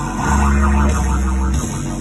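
Live rock band playing, with guitar and bass; a low bass note is held for about a second and then breaks off.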